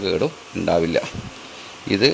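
A man's voice speaking in short phrases, with a pause of under a second near the end.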